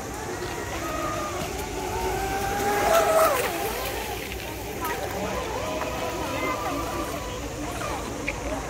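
Radio-controlled model speedboats running on a pond, their motors giving a whine that holds and shifts in pitch, loudest about three seconds in, with people talking in the background.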